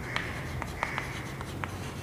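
Chalk writing on a blackboard: short scratching strokes, with several sharp taps as the chalk meets the board and a brief high-pitched squeak in the first second.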